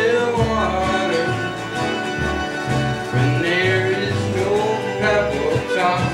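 Acoustic string band playing a country-style song: strummed acoustic guitars under a plucked lead line that slides between notes.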